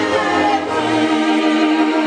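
Unaccompanied group singing, with several voices holding long, slowly bending notes.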